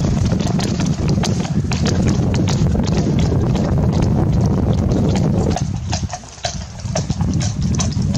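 Hooves of a group of horses moving over grass turf: a dense, irregular run of thuds and clicks over a low rumble, easing briefly about six seconds in.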